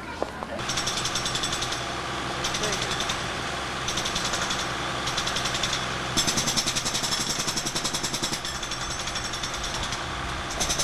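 Rapid, even mechanical rattling over a steady low hum, like a motor or engine running, starting about half a second in and growing louder for a couple of seconds near the middle.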